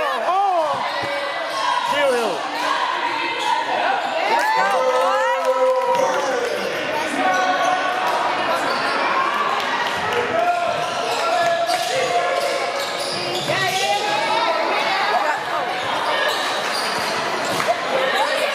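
Live basketball game sound in a gym: sneakers squeaking in short sliding chirps on the hardwood floor, the ball dribbling, and players' voices calling out.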